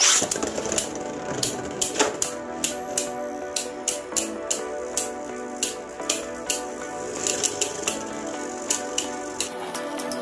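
Background music playing over two Beyblade spinning tops launched into a plastic stadium, with a burst of noise at the launch and sharp clicks scattered throughout as the tops strike each other and the stadium.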